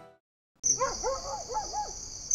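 The background music fades out, and after a short silence a night-ambience sting starts: steady cricket chirring with a quick run of about five short rising-and-falling animal calls.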